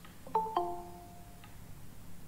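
Google Meet's join-request notification chime: two quick descending tones, the second lower and ringing out for about a second.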